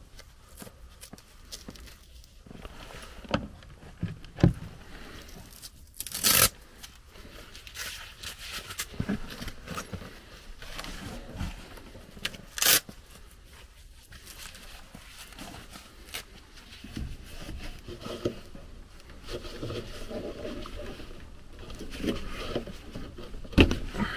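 Hands working on a furnace's inducer and drain fittings: scattered scraping, rustling and clicking of parts being handled and pulled, with two sharp, loud knocks, about six seconds in and again about twelve and a half seconds in.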